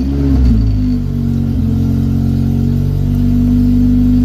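Honda CRX's swapped B-series four-cylinder engine just fired up, its revs flaring briefly as it catches and then settling into a steady idle.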